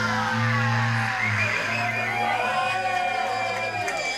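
A live rock band's final chord ringing out, bass and guitar sustained, with the low notes cutting off near the end, while the audience cheers.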